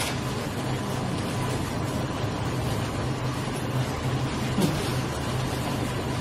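Steady low hum over a constant background noise, with one short knock about four and a half seconds in.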